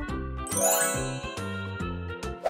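A bright, high chime sound effect about half a second in, ringing on for about a second over a steady music bed with a beat. It marks the quiz timer running out before the answer is revealed.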